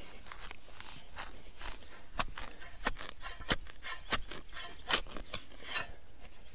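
A spade blade cutting into lawn turf and soil and scraping under it: an irregular series of short, sharp cuts and scrapes, a few clearly louder than the rest, as the sod is sliced through and levered up.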